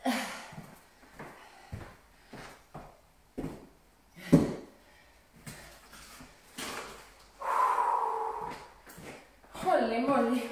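Hand-held dumbbells being moved and set down: a series of separate knocks and clunks, the loudest about four seconds in.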